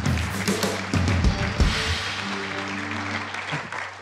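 The live house band plays a short musical sting with strong bass notes, which settle into held chords, over audience applause.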